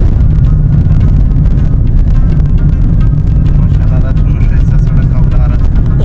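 Loud, steady low rumble of a moving car heard from inside the cabin: road and engine noise, with faint voices in the background toward the end.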